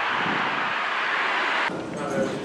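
Steady rushing outdoor street noise that cuts off abruptly near the end.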